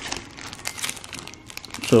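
Clear plastic bag crinkling as it is handled, with a quick irregular run of small crackles.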